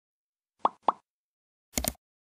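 Sound effects of an animated subscribe-button outro: two quick plops about a quarter second apart, then near the end a brighter, fuller click-like hit as the button is pressed.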